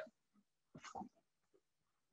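Near silence: room tone, with one faint short sound about a second in.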